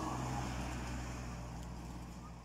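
A car driving past on the street, its engine and tyre noise fading as it moves away.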